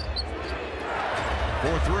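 A basketball being dribbled on a hardwood arena court, over a steady hum of crowd noise.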